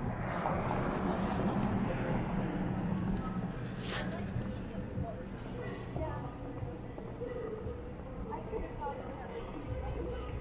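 Street ambience with indistinct voices of passers-by over traffic noise that swells in the first couple of seconds. A sharp click comes about four seconds in.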